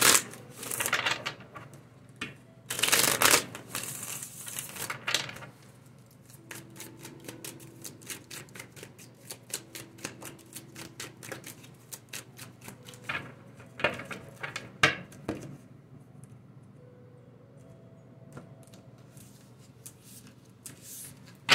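A deck of tarot cards shuffled by hand: a few loud swishes of cards sliding against each other, then a long run of quick card flicks, thinning to a few soft taps near the end.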